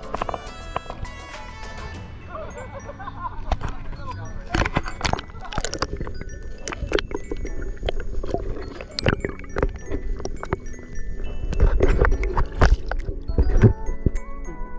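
Background music for the first couple of seconds. After that come people's voices and repeated sharp splashes and knocks in the water, the loudest near the end.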